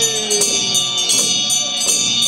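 Buddhist monks' ritual music: handheld frame drums struck in irregular strokes, several in two seconds, under a steady high metallic ringing. A chanting voice holds a long, slowly falling note.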